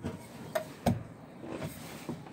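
Two light knocks in the first second with faint handling noise: an aluminium ladder to a motorhome's over-cab bed being climbed.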